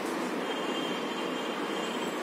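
Steady background noise, an even hiss with no rhythm, and a faint, thin, high steady whine starting about half a second in.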